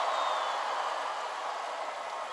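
Large crowd cheering and applauding, a steady wash of voices and clapping that slowly dies down.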